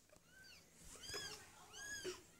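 A young kitten mewing faintly: three short, high-pitched mews about two-thirds of a second apart, each rising and then falling in pitch.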